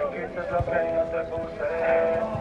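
A voice singing long, held notes.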